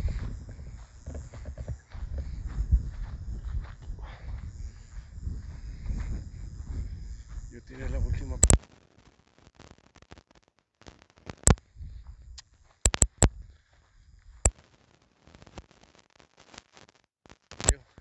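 Low, uneven rumble on the microphone that stops abruptly with a sharp click about eight and a half seconds in. After that it is mostly quiet, broken by a handful of isolated sharp clicks.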